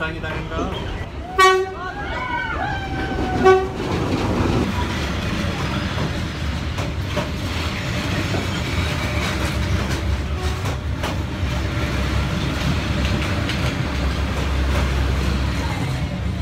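Train horn sounding two short blasts about two seconds apart, then the train passing close by with a steady low rumble of wheels and engine.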